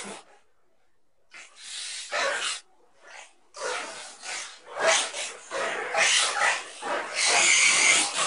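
Harsh, heavily distorted and amplified audio of a TV logo ident, coming in rough noisy bursts that grow fuller and louder toward the end.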